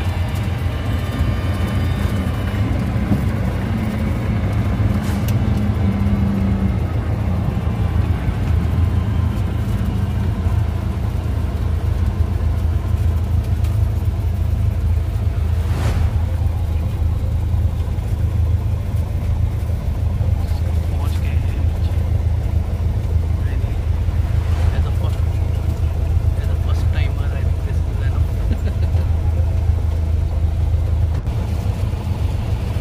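Single-engine light aircraft's piston engine and propeller running at a steady low-power drone while taxiing, heard from inside the cockpit.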